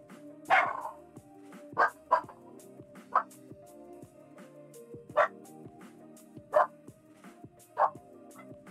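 A dog barking, about seven short sharp barks at uneven intervals, over steady background music.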